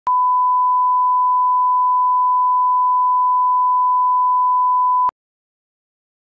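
Broadcast line-up test tone played over colour bars: one steady, pure beep at a single pitch, held for about five seconds and then cut off sharply. It is the reference tone used to set audio levels before a programme starts.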